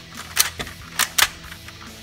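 Hard plastic clicks and taps, three sharp ones about a second apart or closer, as a toy blaster's rail clip is pushed and fitted onto a Nerf blaster's accessory rail.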